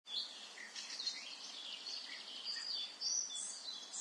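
Birds chirping: many short, high chirps overlapping one another, a little louder in the last second.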